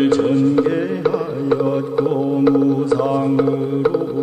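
Won Buddhist scripture chanting: a low voice reciting on a sustained, nearly level monotone, over a steady beat of sharp clicks about three a second.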